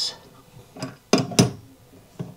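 Metal clinks of a bidet hose's threaded nut being tightened onto a chrome water-supply T-fitting: a few sharp clicks, the loudest about a second and a half in.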